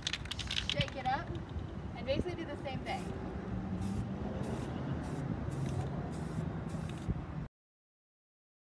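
Aerosol spray paint can hissing in about seven short bursts over some four seconds, each under half a second long, as paint is sprayed onto a wall. The sound cuts off abruptly shortly before the end.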